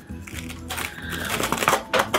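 Small crackles and clicks of a scored, taped aluminium ration case being pried open by hand, coming thicker in the second half, over steady background music.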